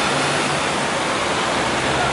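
Steady noise of road traffic at a busy junction, with the low hum of a double-decker bus engine close by.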